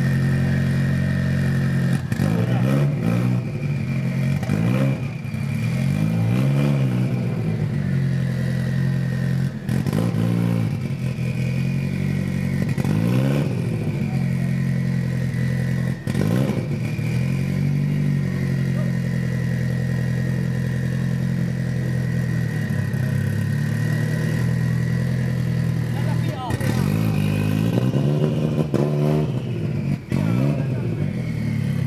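Ford Escort RS Cosworth's turbocharged four-cylinder engine idling, with the throttle blipped again and again so the revs rise and fall a dozen or so times, several in quick succession near the end.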